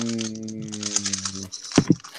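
Rapid clicking and clacking of a 15x15 speed cube's layers being turned by hand. A voice holds one long, drawn-out note over it that stops about a second and a half in.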